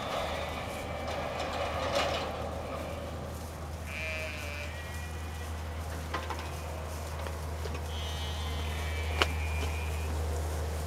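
Goats bleating: one call about four seconds in and a longer one near the end, over a steady low hum, with a few sharp clicks, the loudest near the end.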